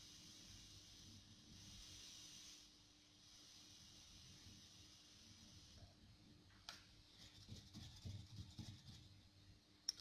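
Near silence: a faint steady hiss that stops about two and a half seconds in, then a few faint clicks and knocks from handling the bench equipment near the end.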